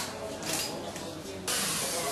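A hissing noise that rises abruptly about three quarters of the way through and then holds steady.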